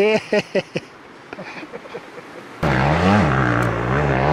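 In the first second, a few short sharp bursts. A bit past halfway a dirt bike engine cuts in loud and close, running hard as the bike climbs a steep hill, its pitch rising and falling with the throttle.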